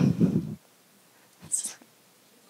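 A woman's breathy, whispered voice close to a handheld microphone, trailing off in the first half-second, then a short hiss about a second and a half in.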